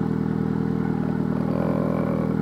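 Mitsubishi Eclipse GSX's turbocharged 4G63 inline-four idling steadily, heard from behind the car through its turbo-back exhaust.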